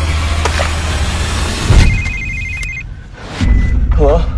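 A mobile phone ringing with a rapid pulsing electronic trill for about a second. It comes just after a loud hit that ends a dense, rumbling trailer soundtrack, and a low boom follows near the end.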